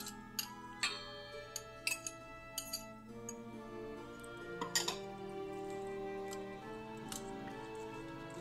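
Metal utensils clinking against a stainless steel mixing bowl as mashed sweet potato is scraped in and whisked into beaten eggs: scattered sharp clinks, most in the first three seconds, over steady background music.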